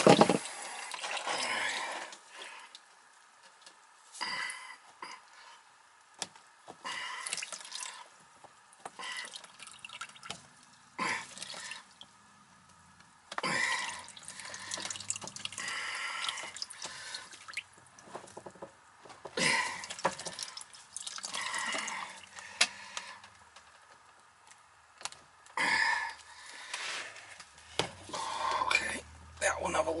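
Water dripping and trickling from the open end of a cleared PVC condensate drain line into a plastic drain pan. It opens with a brief loud burst as the line is blown out. Irregular rubbing and knocking of the PVC pipe being handled and refitted follows.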